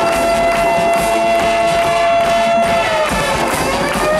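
High school marching band playing, the brass holding a long, loud sustained note that slides down in pitch near the end.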